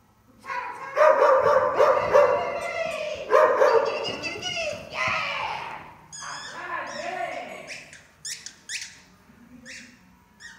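A dog vocalising excitedly: loud, drawn-out barking whines for the first half, then a run of short, very high yips.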